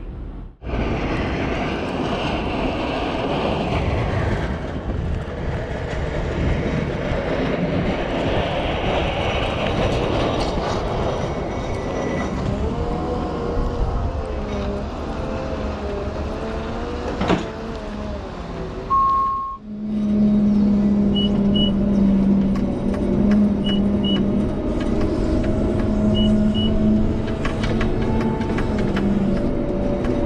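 Cat 930M wheel loader's diesel engine running under load while it pushes snow with a Metal Pless pusher, its pitch wavering. A cut about two-thirds of the way in brings a louder, steady in-cab engine drone with short paired beeps every couple of seconds.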